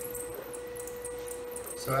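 DC servo motor driven by a Geckodrive G320X servo drive, turning slowly back and forth on a bench test, giving a steady mid-pitched hum.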